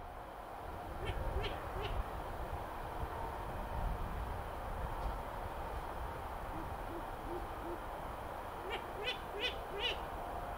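Long-eared owl calling: a run of soft, low hoo-hoo hoots. A group of three sharp, higher calls comes about a second in and another four near the end.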